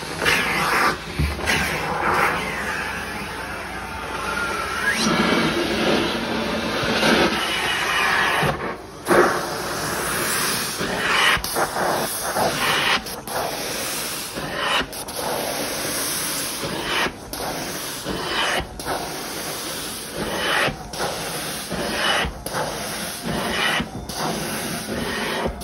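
Hot water extraction stair tool spraying hot water and sucking it back up from carpet: a steady loud hiss of spray and suction. From about halfway through it is broken every second or two by brief drops.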